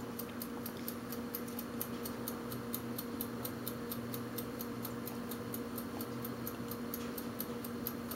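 Steady fast ticking, about five sharp ticks a second, over a low, even hum.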